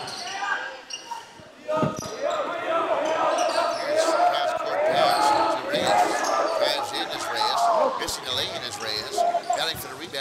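Live basketball play on a gym's hardwood court: a ball dribbling, with one sharp thud just before two seconds in, and many short squeaks of sneakers as players cut and stop. Voices of players and spectators carry through the hall.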